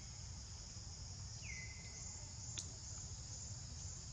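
Steady, high-pitched chorus of insects buzzing. About a second and a half in, a whistled call slides down and holds a steady note briefly, and a sharp click comes a second later.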